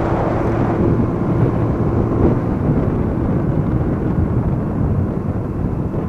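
Kawasaki Bajaj CT100 100cc single-cylinder motorcycle running at a steady cruise, its engine hum under heavy wind rushing over the camera microphone.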